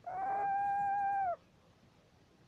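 A small owl giving one steady, even-pitched call that lasts just over a second and cuts off abruptly.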